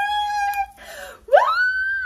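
A woman's excited high-pitched "woo!": her voice rises steeply in pitch, holds for about half a second, then drops away near the end. Before it comes a long held vocal note.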